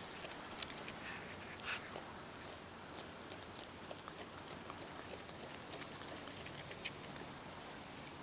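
Raccoon chewing a piece of food held in its front paws: faint, irregular wet clicks and smacks.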